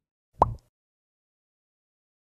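A single short pop sound effect about half a second in, of the kind that marks on-screen graphics popping into view.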